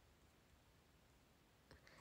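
Near silence: faint room tone, with one faint click near the end.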